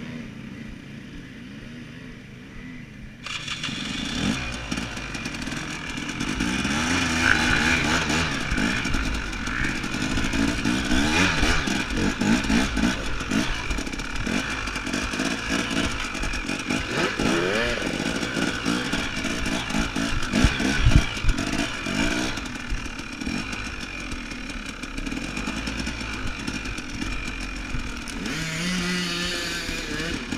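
KTM 250 enduro dirt bike engine running quietly, then from about three seconds in revving up and down with the throttle as the bike rides a rough trail. A few sharp knocks come about twenty seconds in.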